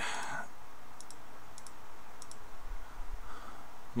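Computer mouse clicking on an on-screen calculator emulator's keys: three quick pairs of faint, sharp clicks, one press-and-release each, spaced about two-thirds of a second apart.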